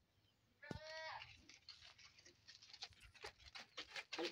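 A goat bleats once about a second in, a short wavering call, followed by scattered light clicks and taps.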